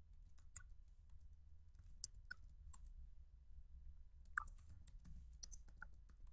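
Faint computer-keyboard keystrokes: scattered, irregular clicks as a name and password are typed, over a low steady hum.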